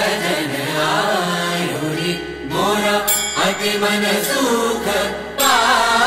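A voice chanting a Hindu mantra in a melodic, sung style over steady musical accompaniment, with short breaks between phrases about two and five seconds in.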